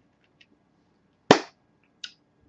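A single sharp clap of hands coming together a little past a second in, against an otherwise quiet room.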